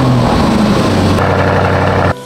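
Lamborghini Urus twin-turbo V8 starting up: the revs flare up and drop back within the first second, then the engine runs on steadily and loudly through the exhaust.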